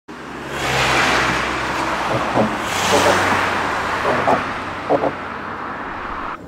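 Road traffic: cars passing by, with two louder passes about one and three seconds in, over a steady low engine hum.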